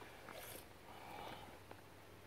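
Faint trickle of motor oil pouring from a plastic jug into a plastic funnel, with a couple of small ticks.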